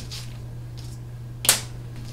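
Scissors cutting through poster board: a couple of soft snips, then one sharp, loud snip about one and a half seconds in, over a steady low hum.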